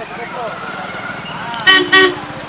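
Two short blasts of a vehicle horn near the end, over steady crowd chatter and the rumble of traffic.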